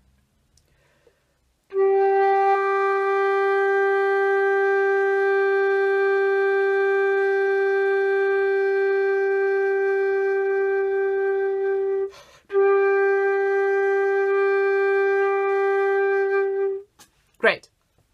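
Metal concert flute holding one long steady note for about ten seconds until the player's air runs out. There is a quick, noisy snatched in-breath, then the same note resumes for about four more seconds.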